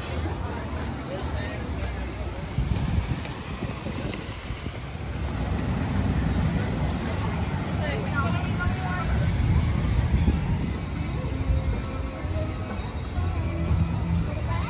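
Outdoor theme-park ambience: faint background music and scattered voices of passers-by over a steady low rumble.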